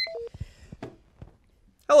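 A very short high electronic beep, then two brief lower tones, followed by a few scattered soft knocks and rustles.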